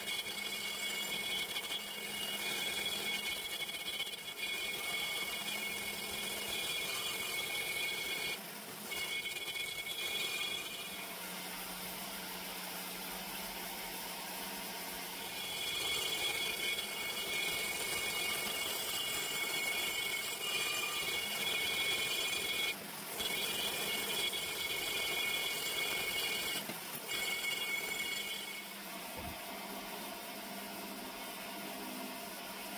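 Die grinder spinning a long-shank carbide burr inside an aluminium RB26 cylinder head port, porting the metal: a steady high-pitched whine with a few brief dips. It stops for about five seconds after ten seconds in, then runs again until shortly before the end.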